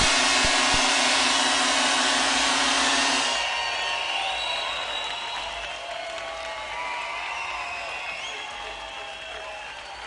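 A live band's final chord and cymbal wash ring out for about three seconds and stop, leaving a large crowd cheering and applauding with scattered shouts, slowly fading.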